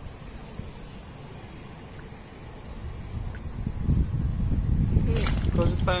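Wind buffeting the microphone, a low rumble that grows stronger about halfway through.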